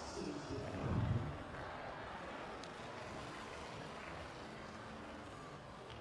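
Dull thumps of a gymnast's feet landing on a sprung competition floor in the first second or so, then the steady murmur of a large arena crowd.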